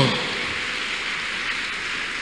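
Steady, even hiss of background noise in a large crowded hall, with no distinct events, in a pause between spoken sentences.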